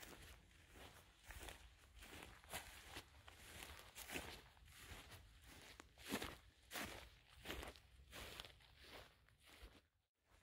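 Faint footsteps of walking boots through tussocky moorland grass, a soft swish and crunch with each step, about one and a half steps a second.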